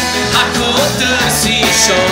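Live rock band playing: a male lead vocal sung into a microphone over electric guitar and a drum kit with cymbals.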